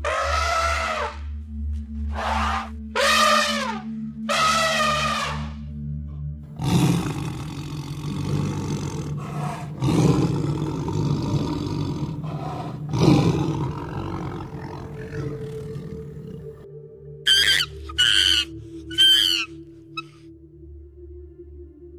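An African elephant trumpeting four times, then a tiger roaring and growling in three loud bouts over about ten seconds, then three short high-pitched macaque calls near the end, over background music.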